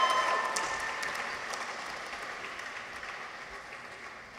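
Audience applause in a large hall, dying away steadily over a few seconds, with a cheer from the crowd ending just at the start.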